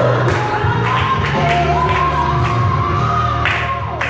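Gospel music with a sung vocal line, held notes that bend in pitch, over a steady bass and a drum beat about twice a second.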